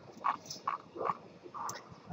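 A man's faint mouth clicks and quiet hesitation sounds in a pause between words, short and scattered.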